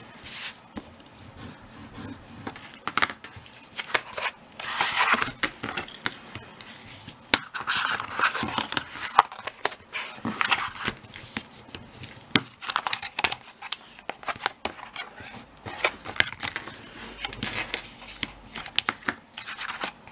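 A bone folder scoring and creasing black cardstock: repeated scraping strokes along the card, with paper rustling and light taps as the card is handled and its edges folded up.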